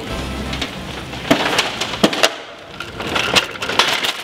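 A metal-and-plastic shopping cart rattling as it is pushed over the ground, with several sharp knocks and clatters from its frame and wheels. Background music plays at the start and stops within the first second.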